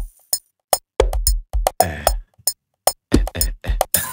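Amapiano drum loop played back from a computer: a soft kick, clicking percussion, and congas run through a delay that adds extra bounce. The full groove thins out to a couple of clicks just after the start and comes back about a second in.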